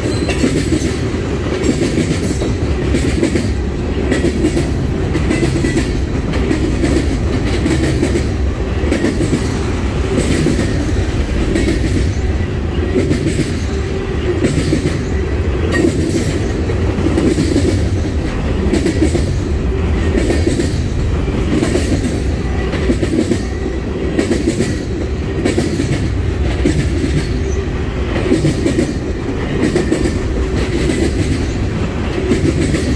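Freight train of tank cars and hoppers rolling past at close range: a steady rumble of steel wheels on rail, with regular clicking as the wheelsets pass over the rail joints.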